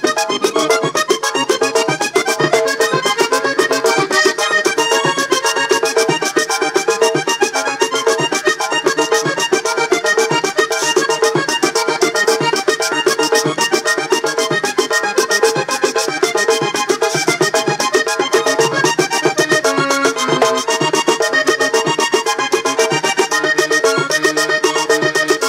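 Vallenato button accordion playing an instrumental passage with fast, continuous runs, backed by a caja drum and a guacharaca scraper keeping a quick, steady rhythm.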